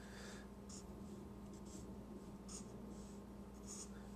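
Felt-tip marker drawing on paper: several short, faint strokes as a line and a box are drawn, over a steady low hum.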